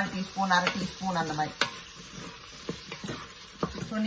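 A wooden spoon stirring vegetables as they fry in the steel inner pot of an electric pressure cooker, with a low sizzle and a few sharp clicks of the spoon against the pot.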